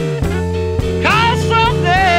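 Blues band instrumental passage: electric lead guitar playing bent, sliding notes from about a second in, over sustained bass notes and drums.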